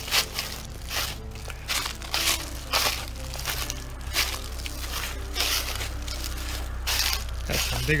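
Footsteps crunching through dry fallen leaves, an irregular step every half second to a second, over a steady low hum.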